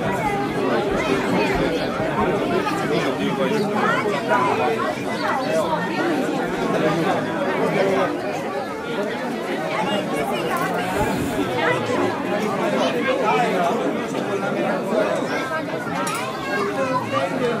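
Crowd chatter: many people talking at once, their voices overlapping without a break.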